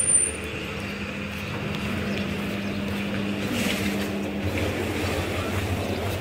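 Street ambience with a motor vehicle engine running nearby, a steady low hum that shifts briefly about three and a half seconds in.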